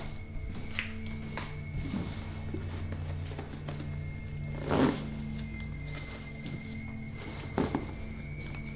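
Background music: a low, steady drone with a faint high held tone. Over it, a backpack is handled and zipped, giving a few short rustling strokes, the loudest about five seconds in.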